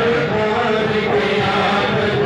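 Many male voices chanting together in a steady, continuous devotional chant.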